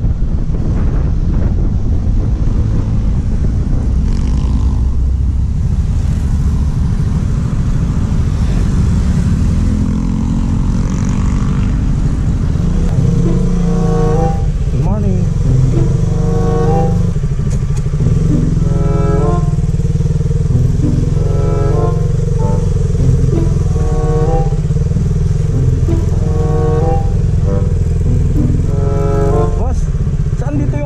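Motorcycle engine running under way, with wind rushing on the helmet-mounted microphone. From about halfway through, a song with a voice and a regular beat plays over the engine.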